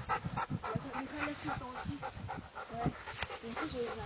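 Dogs panting hard while play-fighting, a beagle puppy wrestling a large black-and-tan dog, with a quick run of breaths and a few short whine-like sounds.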